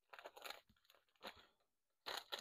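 Faint handling noise of paper crafting supplies: a quick run of small clicks and paper rustles, then one more about a second later.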